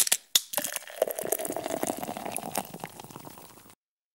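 A sharp click, then about three seconds of dense crackling fizz that slowly fades away, set under an animated logo intro.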